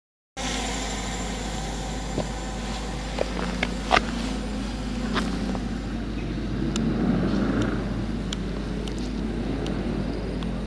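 Steady outdoor road-traffic rumble with a few scattered short clicks and knocks.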